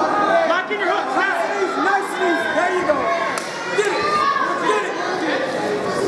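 Many voices shouting and yelling over one another in a large hall: a fight crowd and cornermen calling out.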